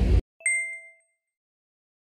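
Outdoor wind and surf noise on the microphone cuts off abruptly, then a single bright 'ding' chime, an editing sound effect, rings out and fades within about half a second.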